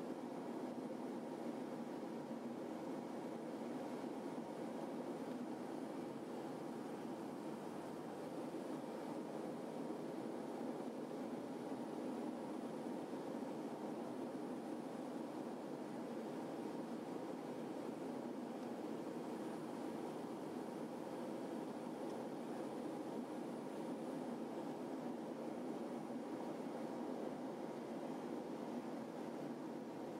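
Steady, even cabin drone of a Beechcraft King Air 300's twin turboprop engines and propellers on final approach.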